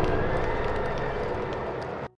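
Rumbling, hissing tail of a cinematic sound effect left after the music's final hit, fading slowly with a faint held tone underneath before cutting off at the end.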